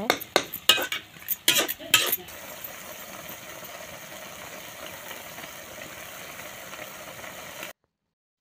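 A metal spatula scraping and clacking against a kadhai as wet greens are stirred, a handful of sharp clicks in the first two seconds. Then a steady sizzling hiss of the greens cooking in a lot of water, which stops abruptly near the end.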